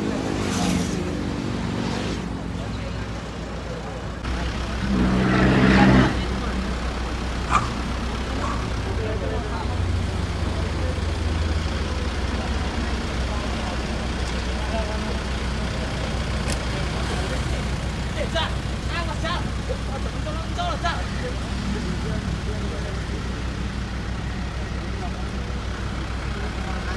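Outdoor bridge ambience: road traffic passing over a steady low rumble of wind on the microphone, with scattered voices of people nearby. There is a louder passing swell about five seconds in that ends abruptly.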